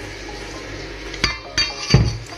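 Stainless steel bowls clinking together: two short ringing metallic knocks about a second and a half in, then a louder, duller thump near the end.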